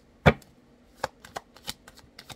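A deck of tarot cards being shuffled by hand: one sharp knock about a quarter of a second in, then several light clicks and snaps of cards.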